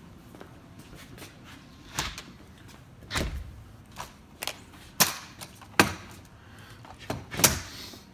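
An exterior door being opened and handled: a run of sharp knocks and clicks about once a second, the loudest about five and seven and a half seconds in.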